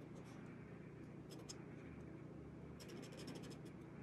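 Faint scratching of an embossing pen's tip drawing lines on watercolor paper, in two short runs of strokes: one about a second in and one around three seconds in.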